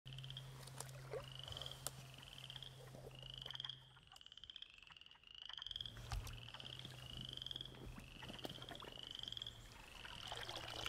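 Frogs calling in a woodland vernal pool: a chorus of repeated rising, trilled calls, about one a second. A low steady hum runs underneath and drops out for a couple of seconds in the middle.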